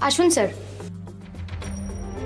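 Soft background music score with a low, steady hum under it. About one and a half seconds in, a thin high ringing tone joins.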